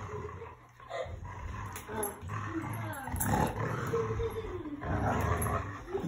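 Dogs play-growling while tugging at a rubber ring toy, with low, steady growls that pause briefly about a second in.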